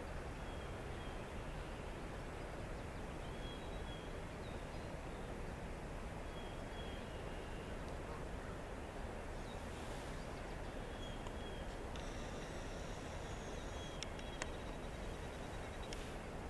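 Steady outdoor background noise with a low rumble, over which faint, short, high bird notes come every couple of seconds, with a few more high notes and a couple of light clicks near the end.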